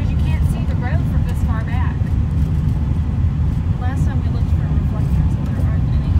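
Steady low rumble of a car's running engine, heard from inside the cabin.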